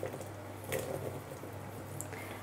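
Fresh blueberries tumbling out of a small metal bowl and landing faintly in a mixing bowl of flour, oil and lemon juice, with one small tap about a second in.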